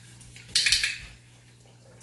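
Dog's metal chain collar jingling briefly, a quick cluster of metallic clinks about half a second in, as the dog moves.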